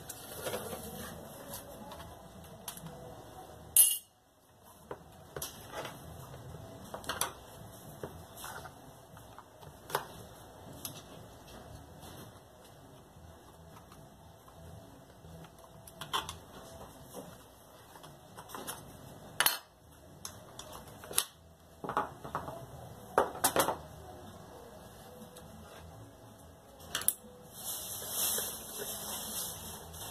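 Irregular clicks and clatter of a screwdriver and the grinder's plastic housing parts as an angle grinder is taken apart by hand, over a steady hiss that grows louder near the end.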